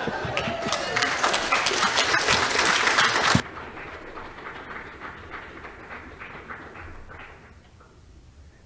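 Congregation applauding after a song, dense clapping at first, which drops off suddenly about three and a half seconds in; fainter scattered claps then carry on and die away before the end.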